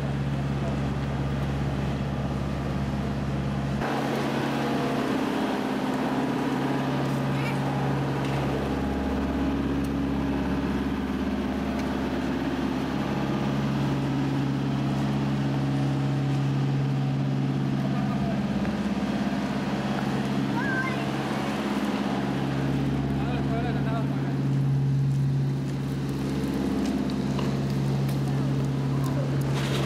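A steady low mechanical hum from a vehicle or street machinery, with faint voices over it.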